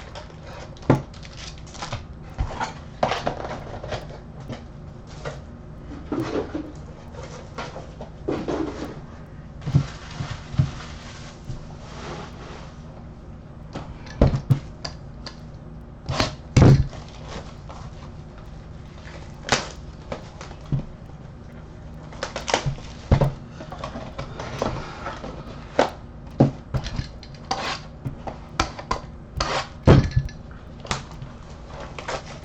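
Cardboard trading-card boxes being unwrapped and handled on a table: plastic wrapping rustling and tearing, with a string of sharp, irregular knocks and taps as the boxes are set down and opened.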